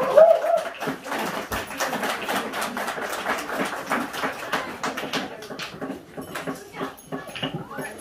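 Rapid, irregular taps of dancers' sandals stamping on a concrete floor, with crowd voices in the background.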